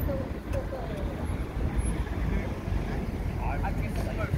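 Outdoor city street ambience: a steady low rumble on the microphone, with faint snatches of chatter from people walking nearby.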